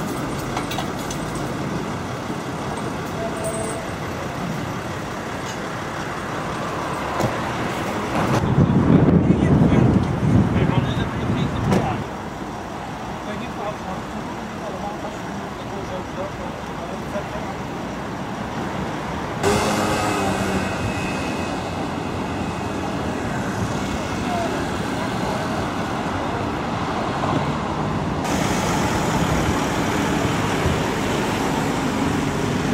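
Street noise from road vehicles and engines, with indistinct voices. The sound changes abruptly several times, and a louder low rumble lasts about four seconds a third of the way in.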